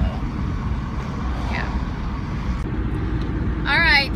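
Steady road and engine noise of a moving car, heard from inside the cabin as a low rumble with hiss. Near the end a woman's voice starts talking.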